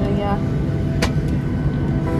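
Jet airliner cabin noise while taxiing: a steady engine hum with a thin, even whine from a Ryanair Boeing 737's engines, heard from inside the cabin. A single sharp click comes about a second in.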